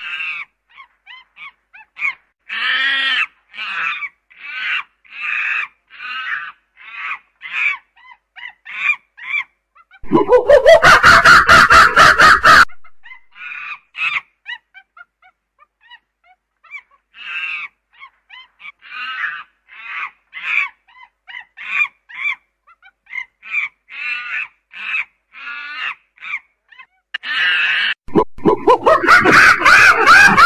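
Chimpanzee calling: a run of short panting hoots, about two a second, broken by loud screams about ten seconds in and again near the end.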